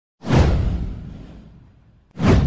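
A whoosh sound effect with a deep boom beneath it: it swells in suddenly about a quarter second in, sweeps downward in pitch, and fades away over about a second and a half.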